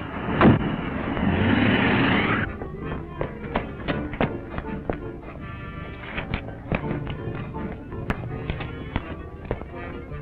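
Film score music under fistfight sound effects. A hard thud comes about half a second in, then a loud rush of noise for about two seconds, then scattered sharp taps and clicks.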